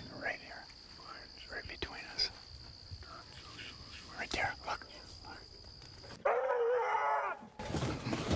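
Hounds baying on a bear track, faint and distant, each bay rising and falling in pitch, over a steady high whine. About six seconds in, a louder, closer bay sounds for about a second and a half.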